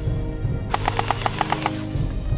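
Background music with a burst of about ten rapid clicks in one second near the middle, a gel blaster firing on full auto.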